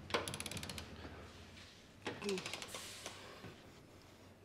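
A ratcheting torque wrench clicking in quick runs as it is swung back and forth, tightening trailer hitch bolts: one run of clicks just after the start and another about two seconds in.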